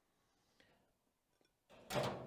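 Near silence, then near the end a sudden bang as the gas grill's two metal cabinet doors are pushed shut, followed by a short ringing decay.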